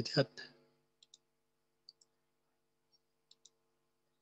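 Faint computer mouse clicks, in three quick pairs about a second apart, over a faint steady hum.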